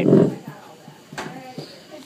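A short, low, grunt-like vocal sound right at the start, then a quiet room with a faint brief sound about a second in.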